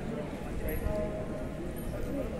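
Indistinct chatter of many people talking at once, a continuous background murmur of voices.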